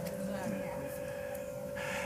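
Quiet pause in a talk: faint room tone with a thin steady hum, and an intake of breath near the end just before speech resumes.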